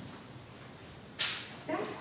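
Quiet room tone, broken a little past halfway by a short, sharp hiss that fades quickly. Near the end a woman starts speaking.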